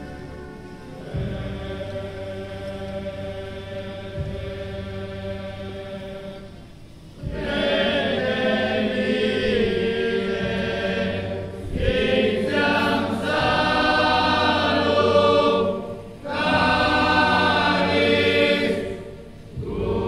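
A large men's choir chanting slowly in long, held phrases. It is quieter for the first few seconds, then loud from about seven seconds in, with short breaks between phrases.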